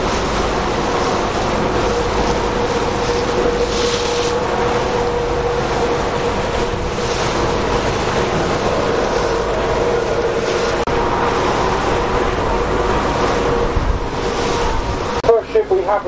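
A tour boat's engine running steadily with a constant hum, under wind rushing on the microphone and the wash of choppy water. A man's voice starts just before the end.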